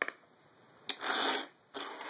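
Coins being slid across a wooden tabletop by hand. A sharp click comes at the start and another just before a second in, then two longer scraping slides.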